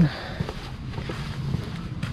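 Faint outdoor background noise with a few soft ticks and knocks.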